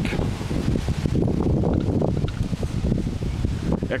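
Wind buffeting the camera microphone outdoors, a low, uneven rushing noise with small gusts and handling bumps.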